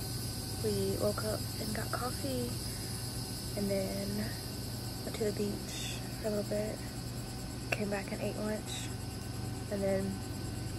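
Steady high-pitched insect chorus of crickets or katydids chirring, with faint low voices coming and going underneath.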